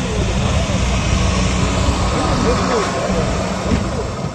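Opel Astra F hatchback's petrol engine idling steadily as a low, even rumble, heard from beside the exhaust, with people talking nearby.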